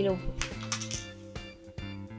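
A small pressed-powder blush pan dropping out of its compact and hitting the floor: a few light clicks and clatters over steady background music.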